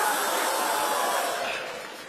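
A long, steady, snake-like hiss that fades out near the end.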